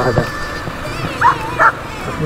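Two short, high dog yips a little over a second in, over the steady running and wind noise of a motorcycle riding in traffic.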